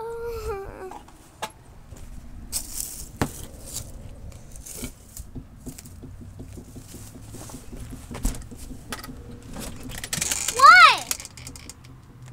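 Scattered rustling and knocks from searching among leaves and clutter. A short child's vocal sound comes at the start, and a loud, high-pitched cry that rises then falls comes near the end.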